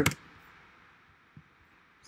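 Near silence: faint room tone, after a single computer keyboard click right at the start.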